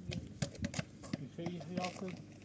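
A quick, irregular run of sharp clicks and knocks, with a person's voice talking over the last part.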